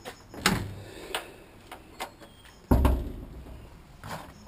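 Key working the boot lock of a 1971 Ford Escort Mk1, with several sharp metallic clicks, then the boot lid unlatching and lifting open with a heavy thump nearly three seconds in.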